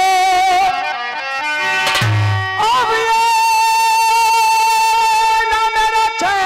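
Instrumental music between sung lines: a run of quick descending notes, a brief low note about two seconds in, then one long steady held note.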